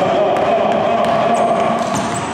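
A basketball being dribbled on a hardwood gym floor, a run of short bounces.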